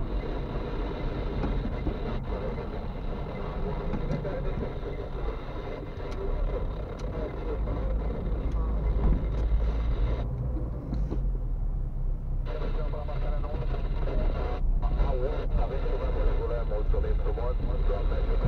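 Car interior noise while driving: a steady low rumble of road and engine, heard inside the cabin, with voices talking over it.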